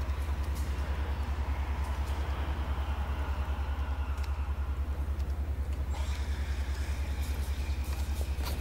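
A steady low rumble that pulses rapidly and evenly, about a dozen times a second.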